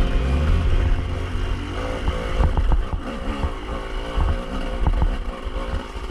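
Dirt bike engine running on and off the throttle, its pitch rising and falling, with scattered knocks and clatter from the bike over rough ground.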